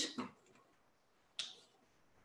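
A single short, sharp click about halfway through, in an otherwise near-silent pause.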